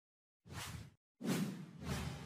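Whoosh sound effects for an animated logo intro: a short swish about half a second in, then, after a brief silence, a louder one just after a second in that fades and swells again near the end.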